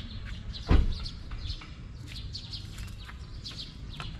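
Small birds chirping repeatedly in short high notes over a steady low outdoor rumble, with one brief louder low sound about a second in.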